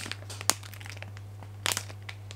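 Plastic instant-noodle packet crinkling in the hand, with two short sharp crackles: one about half a second in and one near the end.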